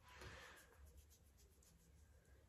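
Near silence, with the faint rubbing of a cotton pad being wiped over the eyelid and lashes, and a low steady room hum.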